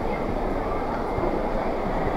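Steady background noise of a busy covered market hall, a continuous rumbling hubbub with indistinct voices.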